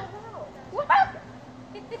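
A short high-pitched yelp about a second in, right after another at the very start.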